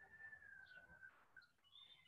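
Near silence: room tone, with a faint thin high tone that stops about a second in.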